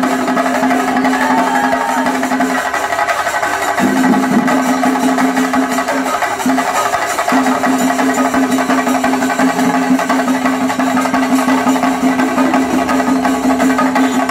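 Loud percussion music: fast, dense drumming with a steady held tone over it. The tone drops out briefly about three seconds in and again around six seconds.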